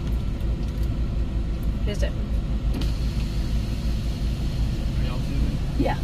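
Steady low rumble of a car's engine and tyres heard from inside the cabin as the car rolls slowly through a parking lot, with faint voices now and then.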